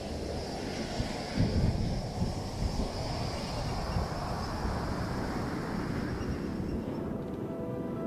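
Ocean surf: waves breaking on a beach, a steady rushing noise with heavier crashes in the first three seconds. Music comes back in near the end.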